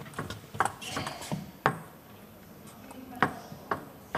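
Table tennis ball clicking sharply off rackets and the table in a quick exchange of shots: about six clicks in the first two seconds, then two more near the end.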